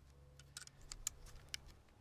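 A handful of faint small clicks and ticks as binoculars are handled and fitted onto a tripod binocular mount, a mount that is a little slow to adjust.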